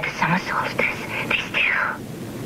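Speech: a voice talking in film dialogue, over a faint steady hiss.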